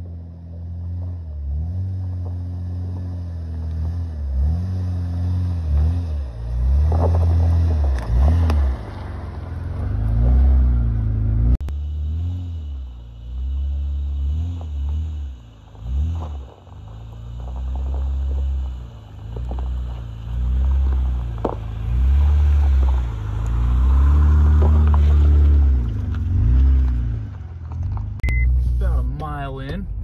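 Honda Ridgeline's V6 engine revving up and down as the lifted truck crawls up a rocky off-road trail, the throttle rising and easing every second or two, with a few sharp knocks.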